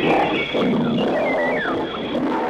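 Cartoon sound effects of several wild animals calling together, with a lion-like roaring quality, over a steady high background tone.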